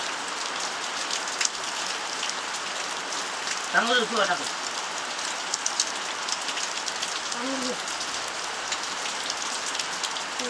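Steady patter of rain, an even hiss dotted with many tiny drop clicks. A child's short, high voice cuts in about four seconds in, and a fainter one comes a few seconds later.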